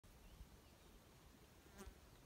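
Near silence, with a brief faint insect buzz near the end.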